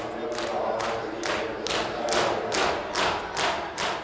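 Matam: a group of men beating their chests with open hands in unison, a sharp slap a little over twice a second, with crowd voices underneath.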